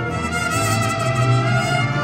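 Mariachi band playing an instrumental passage, trumpets and violins in front over guitars and harp.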